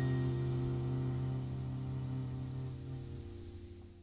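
Jazz combo's final chord of a slow ballad, held and slowly dying away, with a low note underneath; it has faded almost to nothing by the end.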